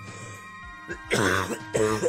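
A man coughs or clears his throat twice in quick succession, starting about a second in, over quiet background music with held notes.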